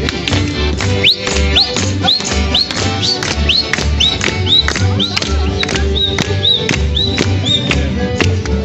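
Live street band of accordion, double bass and guitar playing an upbeat instrumental with a steady bass beat about two a second. From about a second in until near the end, a high whistle-like note swoops upward again and again, about twice a second.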